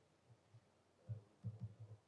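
Laptop keyboard keystrokes picked up as faint, dull low thuds: a couple of light taps, then a quick run of about five in the second second as a number is typed.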